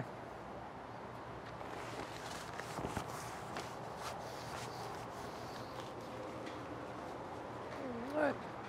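Faint rustling and light clicks of a spare-tire cover being pulled down over a travel trailer's spare tire, mostly in the first half, over a steady background hiss.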